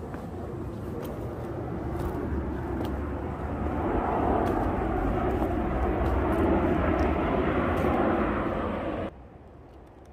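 Airplane passing overhead: a steady engine rumble that grows louder over several seconds, then cuts off abruptly about nine seconds in.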